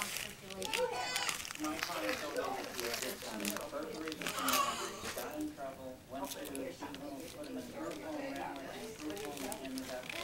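Voices chattering without clear words, mostly a young child's babble, with wrapping paper crinkling and tearing under small hands.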